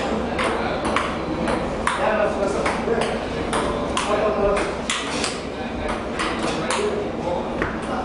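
Table tennis rally: the ping-pong ball clicking sharply off paddles and the tabletop, about two hits a second, with voices talking in the background.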